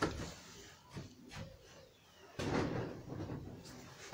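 A few faint knocks in the first half, then about a second of rustling and shuffling from the middle, with no one speaking.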